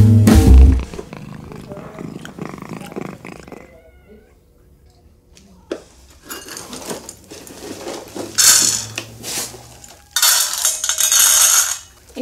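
A guitar music cue ends about a second in. After it comes quieter room sound with a cat's calls, then loud bursts of hiss-like noise near the end.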